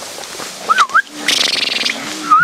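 Dry hay rustling as an armful is carried and handled, louder in the second half. There is a short warbling whistle-like call just under a second in.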